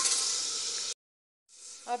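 Chopped tomato and onion sizzling in hot ghee in an aluminium pressure cooker, a steady hiss. The sizzle cuts off abruptly about a second in, then returns fainter just before a woman's voice begins.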